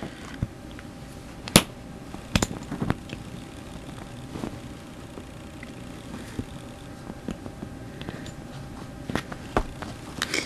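Light, scattered clicks and knocks from hands handling a plastic water bottle and its cap, about ten in all, the sharpest about one and a half seconds in, over a steady low hiss.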